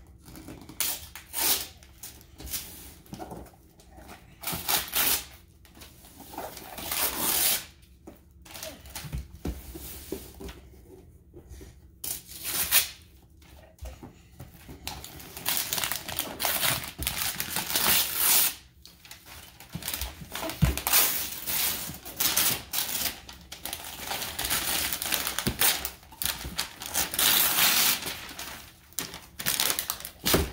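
Wrapping paper being ripped and crumpled off a gift box by a small child, in irregular bursts of tearing and rustling with short pauses between.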